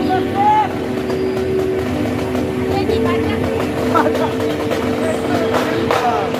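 Marching band brass holding long sustained chords, moving to a higher chord about three seconds in, with voices calling out over the music and a few sharp hits.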